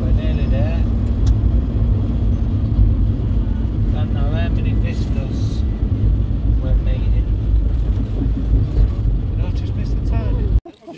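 Car cabin noise while driving: a loud, steady low rumble of road and engine noise inside the moving car.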